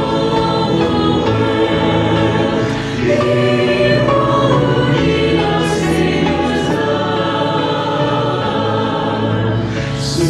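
Virtual choir of men's and women's voices singing a worship song together, sustained and continuous throughout.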